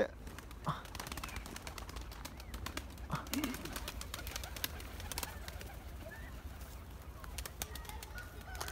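Domestic pigeons cooing faintly over quiet outdoor ambience, with scattered light clicks and a short soft call about three and a half seconds in.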